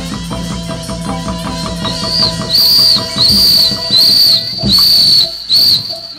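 Burmese hsaing ensemble music with drums and percussion, then six loud, shrill whistle blasts of about half a second each, starting about two seconds in, over the fading music.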